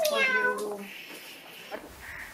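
A single drawn-out, meow-like vocal cry that falls in pitch over about a second, made by a woman's voice.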